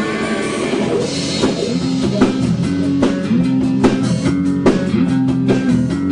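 A rock band playing: electric bass and guitar riffing over a drum kit, with a steady beat of drum hits.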